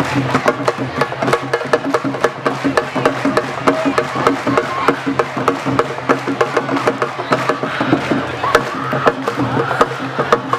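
Live percussion music for dancing: rapid, sharp drum strokes several times a second, with voices singing over them.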